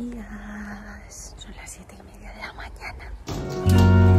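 A quiet voice murmuring over low background noise, then acoustic guitar background music comes back in loud about three and a half seconds in.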